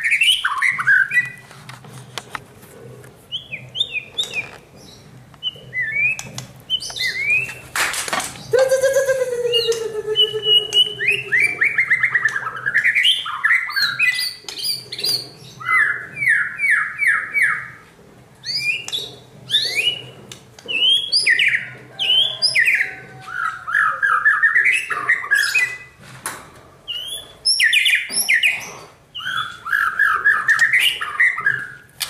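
Caged white-rumped shamas singing loudly: varied whistled phrases with glides, trills and fast runs of repeated notes, phrase after phrase with short gaps. About eight seconds in there is a sharp knock, followed by a lower, harsher falling call.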